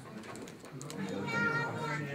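A few light clicks and rustles, then about a second in a high-pitched, drawn-out vocal sound over a low background murmur.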